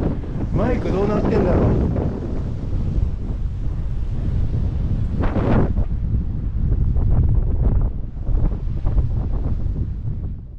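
Wind buffeting an action camera's microphone, a loud steady rumble, with waves breaking on the shore behind it.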